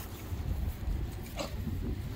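A dog gives one short yelp about one and a half seconds in, over a steady rumble of wind on the microphone.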